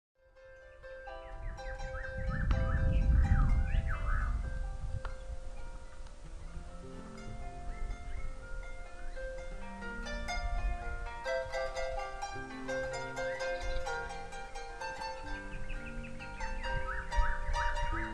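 Harp music fading in, with many plucked notes ringing on over one another. Short high chirps sound over it near the start and again near the end.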